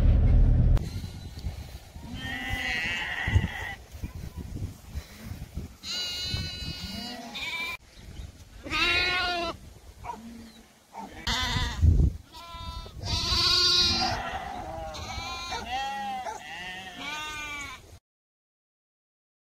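Sheep bleating: a series of wavering calls from several animals at different pitches, coming closer together and overlapping near the end.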